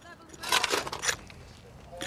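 Digging tools striking and scraping into soil, a cluster of strikes between about half a second and a second in, then quieter.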